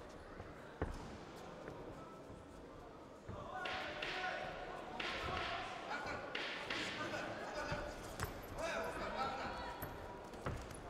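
Boxing bout in a large hall: a sharp thud about a second in, then shouting voices from about three seconds on, with a few more thuds of gloves and feet on the ring.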